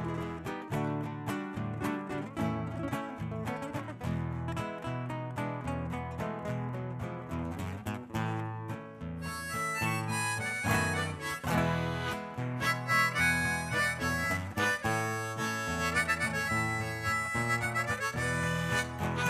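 Instrumental folk tune played live on classical guitars, plucked and strummed. About nine seconds in, a harmonica comes in playing the melody over the guitars.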